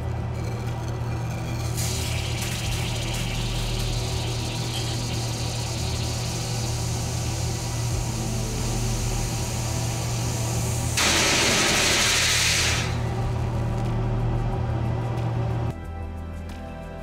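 Gas hissing through a glass tube into liquid ammonia over a steady low hum. The hiss comes in about two seconds in and turns into a loud rush for about two seconds near the end. Background music plays throughout.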